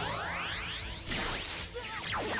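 Anime soundtrack: a rising, sweeping whoosh sound effect in the first second over background music, followed by noisier action sounds.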